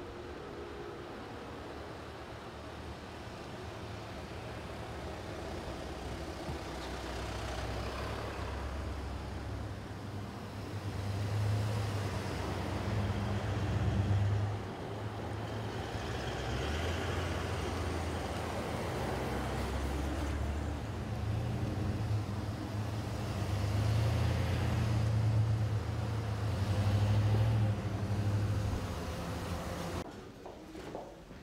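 A motorcade of SUVs and vans driving past one after another: a low engine rumble and tyre noise that swell and fade as each vehicle passes, building to their loudest about halfway through and again near the end.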